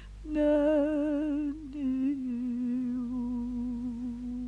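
A woman humming a slow wordless melody with vibrato: two long phrases, the second settling onto a lower held note that fades out.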